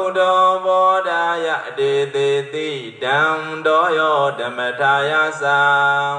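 A Buddhist monk chanting in a slow, melodic recitation through a microphone, his voice holding long steady notes with gliding pitch changes between phrases.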